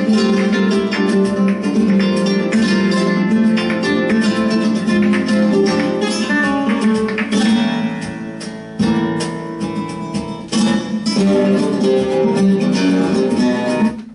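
Flamenco guitar playing a bulería, with quick plucked note runs over strummed chords. It eases briefly near the middle, then picks up again and stops at the very end.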